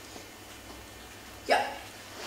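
Faint room tone in a pause between lines, then one abrupt spoken word, "Ja", with a sharp start near the end.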